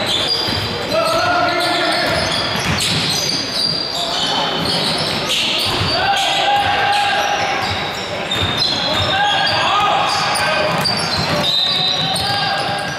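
Basketball bouncing on a hardwood gym court during play, amid several drawn-out high squeaks and players' voices, all echoing in the large hall.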